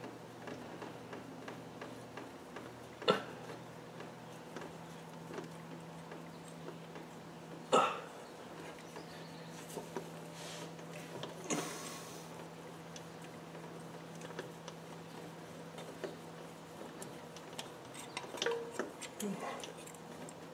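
A few light clicks and knocks, the loudest about three and eight seconds in, as a spin-on oil filter canister is handled and turned against its filter head, over a low steady hum.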